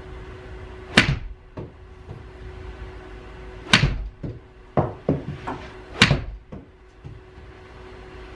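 Three 7-iron pitch shots with Callaway Warbird golf balls in a simulator bay, about two and a half seconds apart. Each is a sharp smack of the club on the ball, with the ball hitting the impact screen just after. Fainter knocks fall between the second and third shots, over a faint steady hum.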